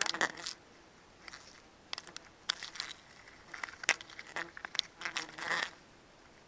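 Climbing noises against tree bark: irregular short clicks, knocks and scrapes of hands, sleeves and gear on the trunk, with brief rustles.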